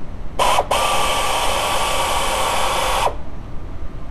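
Air ratchet with a T30 Torx bit driving a fastener on the engine: a short burst, a brief pause, then a steady run of about two and a half seconds that cuts off sharply, a hissing whir with a faint steady whine.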